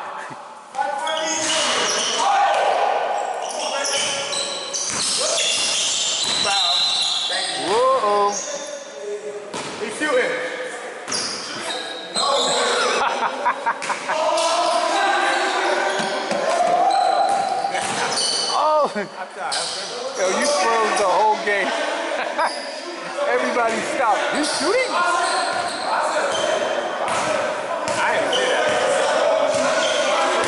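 A basketball bouncing and being dribbled on a hardwood gym floor, with a couple of brief shoe squeaks and players' voices, all echoing in a large hall.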